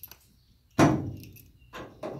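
A single sharp knock about three-quarters of a second in, fading over most of a second, followed by a faint small knock near the end.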